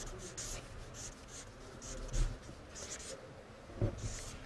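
Felt-tip marker writing on a flip chart pad: a run of short, soft strokes as letters are written on the paper.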